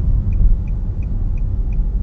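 Steady low rumble of a car's engine and tyres heard from inside the cabin while driving, with the turn-signal indicator ticking faintly about four times a second.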